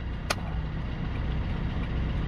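Vauxhall Combo van's engine idling steadily, heard inside the cab, with a single sharp click about a third of a second in.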